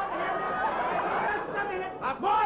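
Several voices talking over one another at once, a jumble of chatter.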